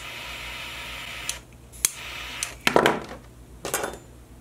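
Butane torch lighter hissing steadily as its flame melts the frayed end of 550 paracord, cutting off about a second and a half in. Then a sharp click and two short clattering knocks as the lighter is handled and set down on the cutting mat.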